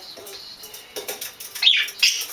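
Budgerigar chirping, with one loud call sliding down in pitch near the end.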